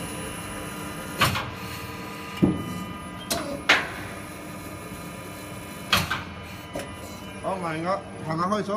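Vertical plastic injection molding machine running with a steady multi-tone hum. About half a dozen sharp metallic clanks come at irregular intervals over it.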